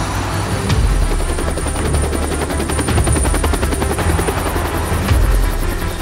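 UH-1Y helicopter with its rotor turning at speed for liftoff: a rapid, even blade chop over a deep rumble, with a steady high turbine whine above it.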